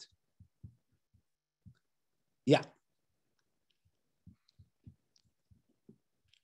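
Faint, irregular computer mouse clicks, a dozen or so short ticks spread over several seconds while the chat is being checked, with one spoken "yeah" about halfway through.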